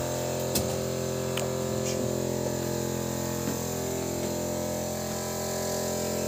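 Steady machine hum made of several even, unchanging tones, with a few faint clicks and knocks about half a second and a second and a half in.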